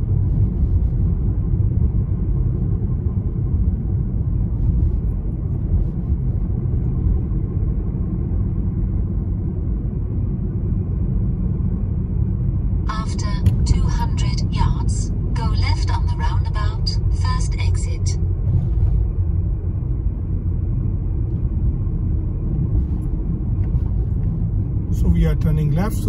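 Steady low road and engine rumble heard from inside a moving car's cabin. A voice is heard for a few seconds about halfway through.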